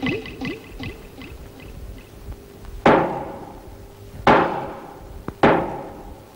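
A judge's gavel striking the bench three times, each blow sharp with a ringing decay of about a second. A wavering voice-like sound trails off in the first second.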